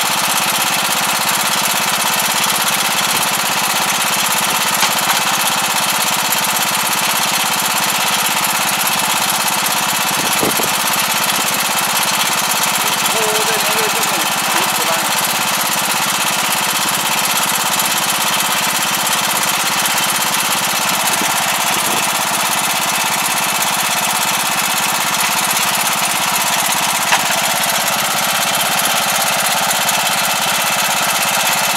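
ISEKI Sanae five-row rice transplanter's engine running steadily, heard close up.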